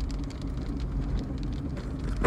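Steady low rumble of a Toyota driving on a gravel mountain road, engine and tyre noise heard from inside the cab, with faint scattered ticks.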